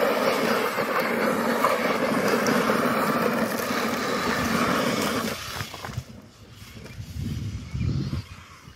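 Traxxas Hoss 3S brushless RC monster truck driving hard across gravel: a steady drivetrain and motor whine mixed with gravel spray from the tyres, dropping away suddenly about five seconds in. A quieter low rumble follows near the end.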